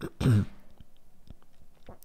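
A man briefly clears his throat once, then a pause with a few faint ticks.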